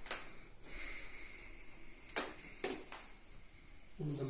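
Faint breathing close to the microphone: a short puff of breath at the start and three more between two and three seconds in, over quiet room tone.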